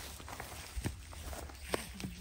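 Footsteps on dry grass and stony ground, with a couple of soft thuds about a second apart.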